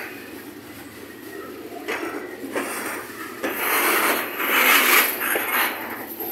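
Freight train covered hopper cars rolling past close by: steel wheels grinding and rubbing on the rails with a few knocks, getting louder in the second half.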